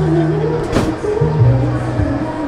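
A single hard punch on the padded bag of a coin-op boxing arcade machine, a sharp thud less than a second in. Loud background music with a steady bass line plays throughout.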